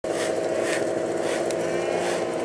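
Snowmobile engines running at a steady, even pitch on the start line, with a brief tick about three-quarters of the way through.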